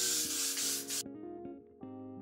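Aerosol can of got2b hairspray spraying in one continuous hiss that cuts off sharply about a second in. Background music with plucked guitar notes plays throughout.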